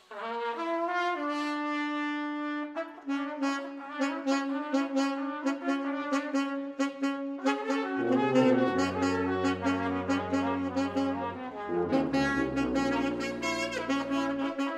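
A small jazz band playing: trumpet and saxophone start together on long held notes and move through a slow line, and low tuba notes join about eight seconds in, with short percussive strikes running through it.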